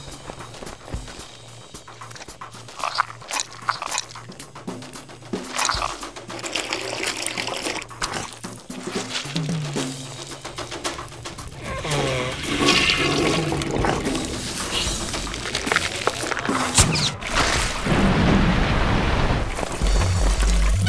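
Cartoon soundtrack of music mixed with wet, liquid sound effects and whooshing sweeps. It gets louder in the last few seconds with a dense rushing, gushing noise as the nose runs.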